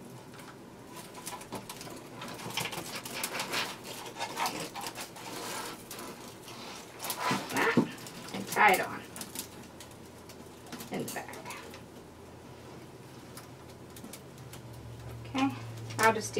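Dry grapevine twigs crackling and rustling as hands push pipe-cleaner ties through the woven vines, with a few short voice-like sounds in the middle.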